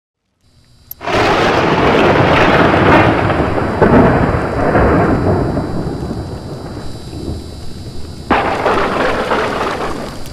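Sound effect for an animated logo intro: a loud, thunder-like noise that starts suddenly about a second in and slowly fades, then a second sudden blast near the end that cuts off abruptly.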